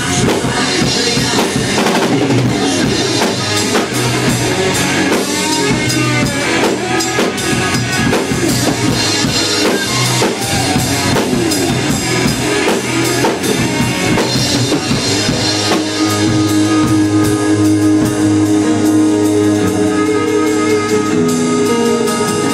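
A drum kit played along to a recorded song during an instrumental stretch with no singing. About two thirds of the way through, long held notes come in under the drums.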